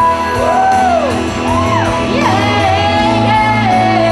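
Female singer with a live band: sweeping vocal runs that rise and fall, then a long held note from about halfway through, over sustained keyboard chords and bass.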